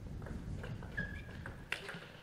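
Table tennis rally: a plastic ball knocked back and forth between rubber-faced bats and the table, a few sharp knocks spread irregularly through the stretch.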